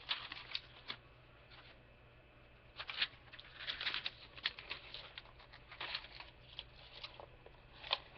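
Paper rustling and crinkling with small tape crackles as a model kit's decal sheet and its taped-on backing paper are handled and pulled at. Brief rustling at the start, a quiet pause, then an irregular run of crinkles and clicks from about three seconds in.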